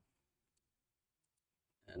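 Near silence with a few faint, brief computer-mouse clicks.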